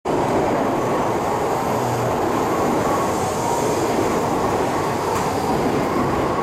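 Shinkansen train at a station platform, giving a loud, steady rushing noise without a break.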